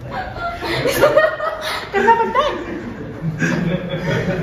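People chuckling and laughing, mixed with snatches of speech.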